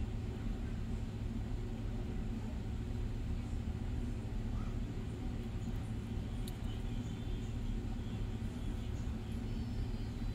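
A steady low hum of background machinery, with a single faint click about six and a half seconds in.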